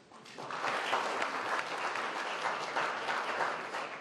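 Audience applauding, a steady patter of many hands clapping. It starts about a third of a second in and thins out near the end.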